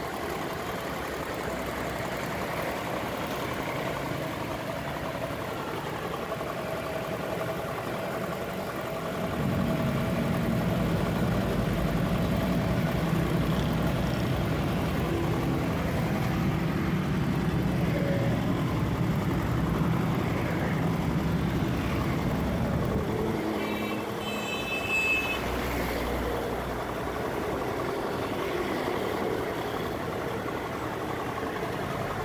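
Truck engine running with street traffic around it; its low rumble grows louder about a third of the way in and eases off about three-quarters through. A brief high-pitched tone sounds near the end.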